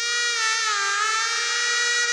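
A wind instrument holding one long note of a melody, the pitch bending down and coming back up about a second in.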